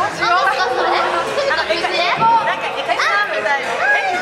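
Women talking over one another in lively conversation.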